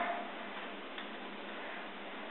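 Steady low hiss with a single faint click about a second in.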